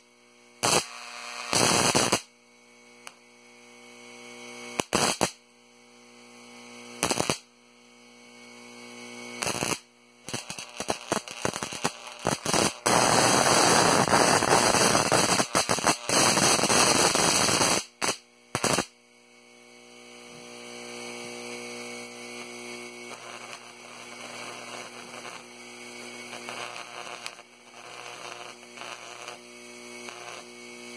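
High-voltage arcing from a neon sign transformer, crackling in loud bursts. First come single bursts every two to three seconds, then a rapid flurry and a continuous arc lasting about three seconds around the middle. After that the arcing stops and a quieter steady electrical hum with faint crackle remains.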